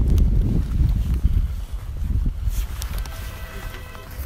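Low rumble of wind and jacket fabric rubbing over a phone microphone, with footsteps on pavement; it dies down after about a second and a half, and a faint steady hum comes in near the end.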